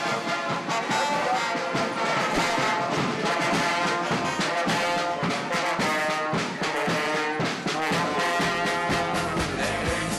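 Carnival brass band playing a lively tune: saxophone and trumpets over a steady drum beat.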